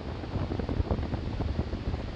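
Wind buffeting the microphone: a steady low rumble broken by irregular short pops and gusts.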